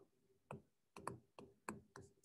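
Faint, irregular clicks and taps of a stylus pen on a tablet screen while handwriting, about six in two seconds.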